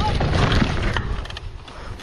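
Mountain bike crash heard from a helmet camera: wind on the microphone and trail rumble broken by knocks and clatter as the bike and rider go down, with a short cry at the start. It goes quieter about a second in.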